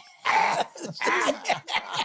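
Men laughing in short, broken bursts at close microphones.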